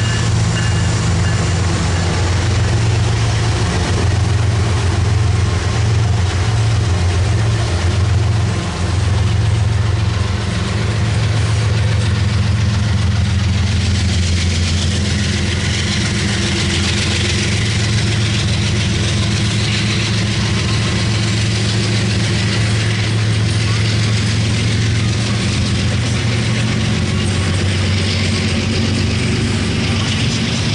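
Loaded coal train passing close by: a diesel locomotive's engine drone as the locomotive goes by, then the steady low rumble and rail noise of loaded coal hopper cars rolling past. The rumble continues unbroken, with more hiss in the second half.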